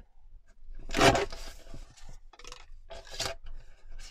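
Small sliding paper trimmer cutting a strip of card: a loud scraping stroke of the blade along its rail about a second in, then two shorter scrapes.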